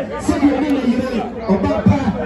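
Several people talking at once close by: overlapping conversation among a seated gathering.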